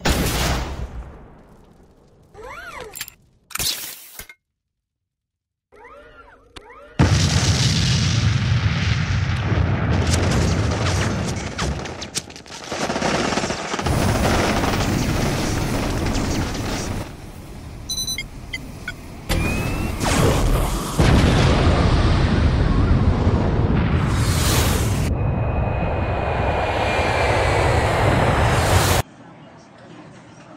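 Designed battle sound effects for an armoured flying suit: a boom at the start and a few scattered hits. From about seven seconds in comes a dense, loud mix of explosions, gunfire and rumble, with the suit's thrusters while it hovers. It cuts off sharply near the end.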